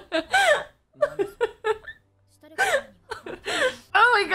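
A woman laughing hard in three bursts of short vocal pulses, with a brief pause about two seconds in.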